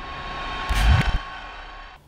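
Logo-intro sound effect: a rushing whoosh that swells, peaks with a deep boom just under a second in, and fades away.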